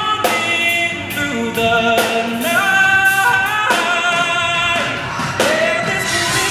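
Male pop singer singing live with a band, holding long notes that slide between pitches over a steady drum beat.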